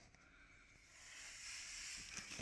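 Near silence at first, then a faint hiss that slowly grows louder over the last second.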